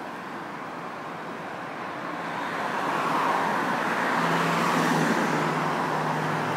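A car approaching and driving past on the street, its tyre and engine noise swelling from about two seconds in, with a steady low engine hum joining in the last couple of seconds.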